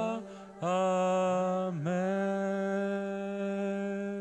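A man's solo voice singing a wordless worship chant in long held notes. There is a short breath about half a second in, then one note is held steady for about four seconds with a brief dip in pitch partway through.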